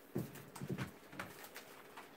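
Sheets of paper being handled and shuffled, with a few short, low, muffled thuds, the loudest a little way in and another near the middle.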